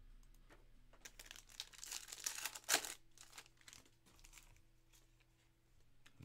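Foil wrapper of a 2023 Panini Phoenix Football trading-card pack crinkling and tearing open for about two seconds, ending in one sharp rip.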